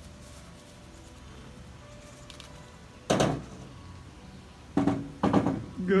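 Quiet at first, then a sudden thunk with a rustle about three seconds in and two more knocks near the end: palm fronds being loaded into the cargo bed of a utility vehicle.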